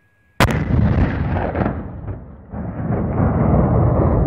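A Gazex avalanche-control exploder test-firing its propane-oxygen gas charge: a single sharp, loud detonation about half a second in, followed by a long rolling rumble that fades and then swells again about two seconds later.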